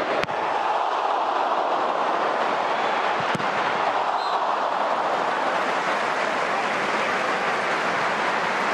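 Football stadium crowd noise, a steady roar of many voices that swells slightly about a second in. Two short sharp clicks stand out, one just after the start and one a little over three seconds in.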